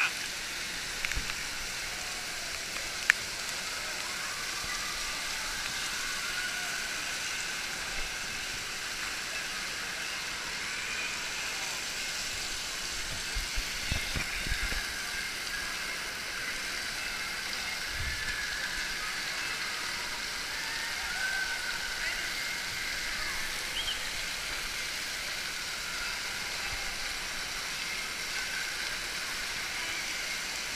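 Indoor waterpark din: a steady hiss of spraying and splashing water, with a background of many voices and children's shouts.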